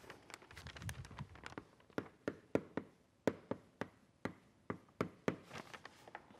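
Chalk writing on a blackboard: an irregular string of sharp taps and short scratches, thickest and loudest from about two seconds in.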